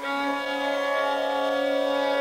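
Carnatic classical music in raga Todi: a single long note held steady without ornament.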